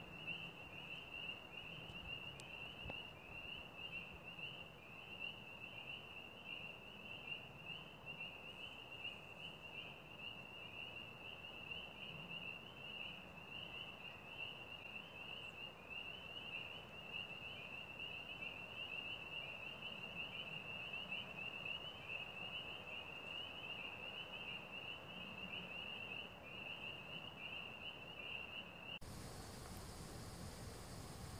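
Insects chirping in a steady, rapidly pulsing high trill over faint outdoor background noise. It cuts off abruptly about a second before the end.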